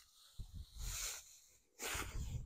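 Footsteps swishing through tall dry grass: two brief soft rustles about a second apart.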